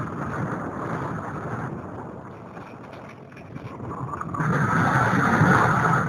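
Wind rushing over the microphone of a camera riding on a radio-controlled glider in flight: a rough, unpitched rush that eases off in the middle and swells louder again from about four and a half seconds.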